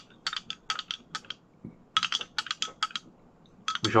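Metal teaspoon clinking against a glass tumbler and ice cubes while stirring an iced drink, in two runs of quick clinks with a short pause about halfway.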